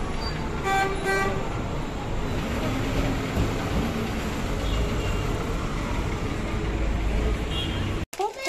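Busy street traffic noise: a vehicle horn gives two short toots about a second in, over a steady low rumble of engines and the chatter of passers-by.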